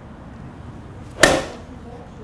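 A Ping fitting 7-iron strikes a Srixon range ball off a lie board in one sharp crack, a little over a second in. This is a lie-angle test shot: the club's taped sole brushes the board and leaves a mark.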